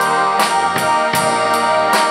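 Brass band playing with a drum kit: sustained chords over a steady beat of drum hits, about two and a half a second.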